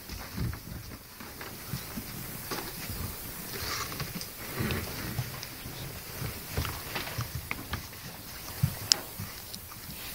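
Cinema audience settling in their seats: scattered rustling, shuffling and small knocks, with a sharp click about nine seconds in.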